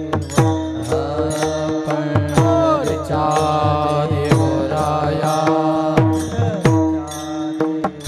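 Warkari bhajan accompaniment: small brass hand cymbals (taal) clashed in a steady rhythm, about three strikes a second, with drum strokes that drop in pitch and a steady held note underneath.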